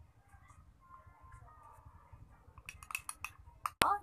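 A metal spoon clinking against a small drinking glass while stirring oats, honey and water into a paste: quiet at first, then a quick run of clinks near the end and one sharp knock.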